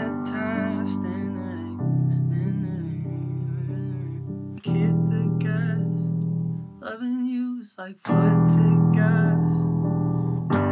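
Sustained piano-like chords played on a MIDI keyboard, changing about every three seconds, with a wordless sung melody over them. The playing drops out briefly just before the last chord comes in.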